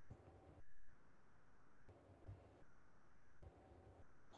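Near silence: faint room tone that cuts in and out every second or so.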